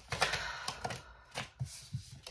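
Tarot cards being shuffled and handled: a quick run of rapid card flicks in the first second, then a few separate clicks as a card is drawn.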